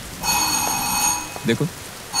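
A telephone ringing: one ring of about a second, made of several steady high tones, part of a repeating ring with short pauses between.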